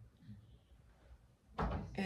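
Quiet room tone, then a single dull thump about one and a half seconds in.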